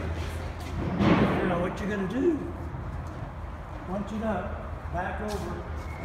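Indistinct, untranscribed voices in a large hall over a steady low hum, with a brief burst of noise about a second in, the loudest moment.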